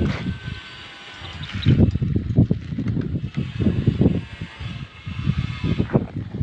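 Wind buffeting a phone's microphone outdoors in irregular low rumbles that rise and fall.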